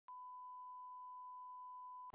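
A faint, steady electronic beep: one pure tone held unchanged for about two seconds.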